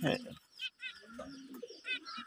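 Caged finches chirping in short quick runs of high notes, once about half a second in and again near the end, with a low coo like a pigeon's in between.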